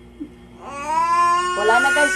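A baby crying: after a short pause, one long, high wail begins about half a second in and rises, with a second voice overlapping near the end.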